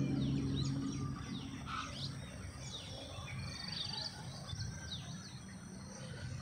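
Small birds chirping in the background: many short, quick chirps, with a brief trill about three and a half seconds in. A low steady hum fades out in the first second or so.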